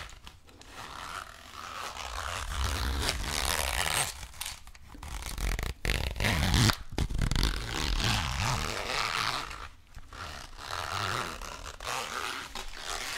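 Zipper of a small gray zippered case being slowly drawn open and shut close to the microphones, in several long strokes with brief pauses between them, along with scraping of fingers over the case.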